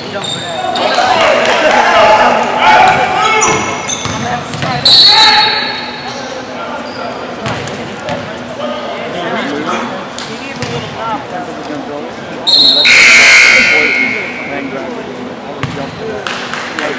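Basketball play on a hardwood gym floor: the ball bouncing and players calling out, echoing in the large hall. A short, high, piercing sound cuts in about five seconds in, and a louder, longer one about thirteen seconds in.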